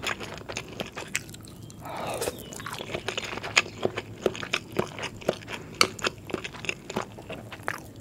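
Close-miked eating sounds: a piece of fried egg bitten and chewed. A steady run of short wet mouth clicks and smacks, with a longer, denser sound about two seconds in.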